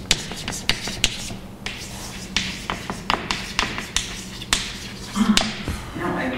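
Chalk writing on a blackboard: a quick, irregular series of sharp taps and short scrapes as the chalk strikes and drags across the slate.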